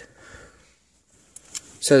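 A short quiet pause in a man's talk, filled with faint handling noise from a cardboard toy box with a plastic window and one small click about a second and a half in. Speech resumes near the end.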